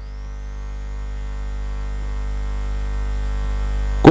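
Steady electrical mains hum from the commentary audio system, rising gradually in level while no one speaks.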